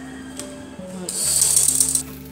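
Old black sewing machine running in a short burst as it stitches a seam through chiffon, starting about a second in and becoming the loudest sound, over soft background music.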